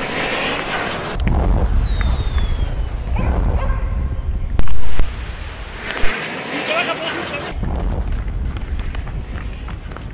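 Low wind rumble on the microphone of a handheld camera during a run, with shouting voices and a brief, very loud distorted burst about halfway through.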